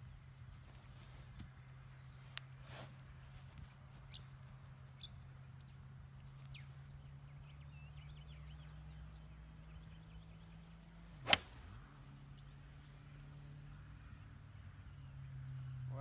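A 7-iron striking a golf ball off the tee: one sharp, loud click about eleven seconds in, by far the loudest sound.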